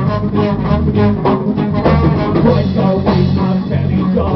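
Live skinhead reggae band playing an instrumental stretch between vocal lines, with guitar, bass and drum kit keeping a steady rhythm.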